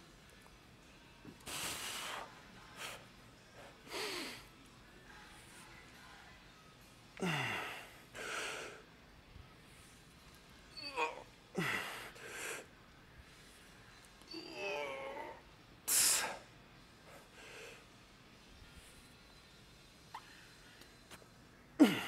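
A man's heavy, forceful breathing while doing barbell back squats: sharp hissing breaths and effortful exhalations every two to three seconds, a few of them strained grunts, as he works through the later reps of a heavy set.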